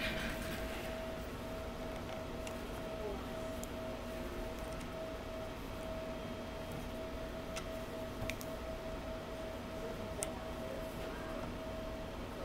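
Quiet room tone with a faint steady whine and a low hum, broken by a few light clicks as a small object is handled.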